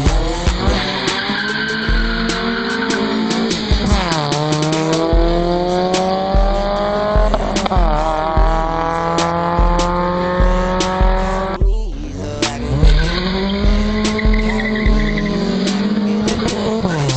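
Car engines accelerating hard, the revs climbing steadily and dropping back at each upshift, about 4, 7.5 and 12 seconds in, then climbing again. Background music with a steady beat plays underneath.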